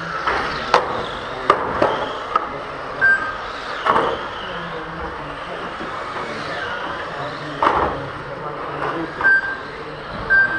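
Electric 1/12-scale GT12 RC cars running on an indoor carpet track: motor whine rising and falling over the tyre noise, with sharp knocks scattered through as cars hit the barriers. Two short beeps from the lap timing system come about three seconds in and near the end.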